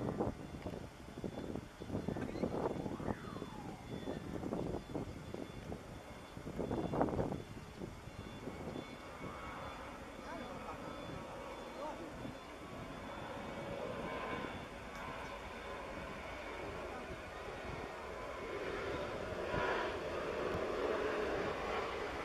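Boeing 737 jet engines at takeoff power on the runway: a steady engine noise that builds gradually louder over the second half. Voices are heard over it in the first several seconds.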